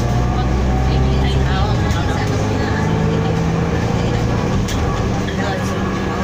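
Inside a city bus on the move: the diesel engine and drivetrain run, with a low drone that shifts about one and a half seconds in and a fainter whine that rises slowly in pitch as the bus picks up speed.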